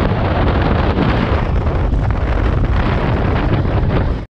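Loud, steady wind buffeting on the microphone of a camera riding on a moving motor scooter, with the scooter's road and engine noise buried beneath it.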